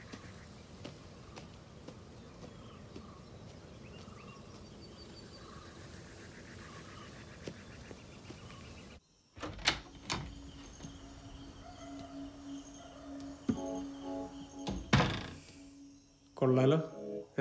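Outdoor ambience, a steady hiss with faint chirps. About nine seconds in it cuts out briefly, then music comes in with a held low note and a few loud thuds.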